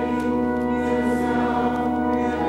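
Choir singing church music, holding one long chord steady.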